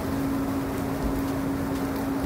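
Jetted bathtub's jet pump running with a steady hum, under the rush of water churning through the jets as they circulate a cleaning solution.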